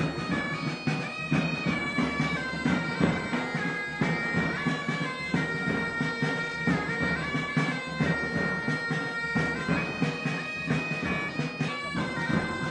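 Bagpipes playing a melody over their steady drones, a pipe-band lament.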